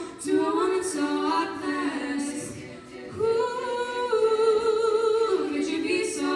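Female a cappella group singing wordless harmonies: a few short held chords, a brief drop in level a little before halfway, then one long sustained chord.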